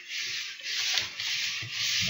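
A steady hiss of recording noise, with no distinct events.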